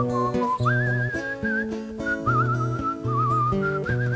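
A man whistling a wavering melody over his own acoustic guitar accompaniment, the tune stepping up higher about a second in.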